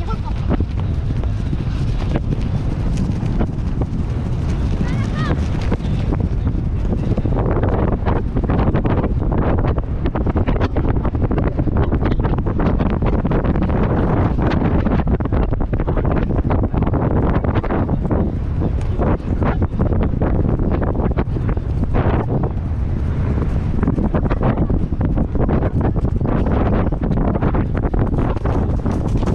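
Wind buffeting a helmet-mounted camera's microphone as a pony gallops, a loud rumbling rush with frequent short thuds from the pony's hoofbeats running through it.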